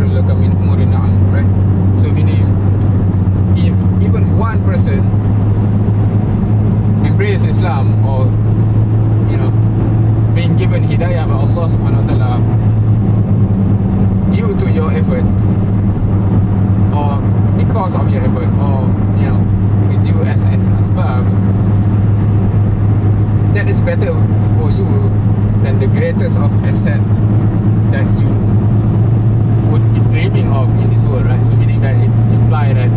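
Steady low drone of a car's engine and road noise, heard from inside the cabin while driving.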